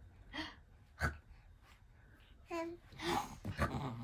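Short breathy gasps, then in the second half a baby's brief high coos mixed with excited breathy sounds.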